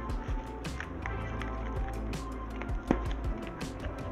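Background music with crinkling and crackling of bubble wrap and tape being pressed around a small package by hand, and one sharp click about three seconds in.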